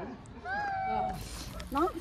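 Small dog whining: a held high whine, then wavering, rising-and-falling cries starting near the end, which draw a "Stop crying" from its owner.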